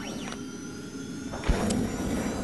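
Logo sting sound effect: a swelling whoosh with a brief sweeping tone at the start and a sharp low thump about a second and a half in, the whoosh carrying on through the end.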